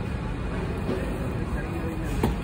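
Steady background noise of a car assembly plant floor, with faint voices in the mix.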